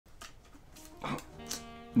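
A small dog makes two short vocal sounds, about a second in and again half a second later, over soft music with held notes.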